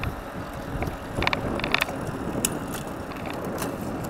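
Bicycle drivetrain clicking: short bursts of sharp ticks, the loudest a little over a second in, over a steady low rumble of wind and road noise from the moving bike.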